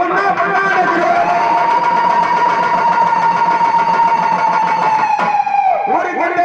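One long, steady note held for about five seconds over a public-address loudspeaker, falling away just before the end.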